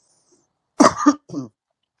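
A person coughs twice in quick succession just under a second in, the first cough sharp and loud, the second shorter and weaker.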